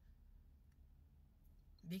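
Near silence in a car cabin: a faint, steady low hum with a couple of faint clicks, and a woman's voice starting again at the very end.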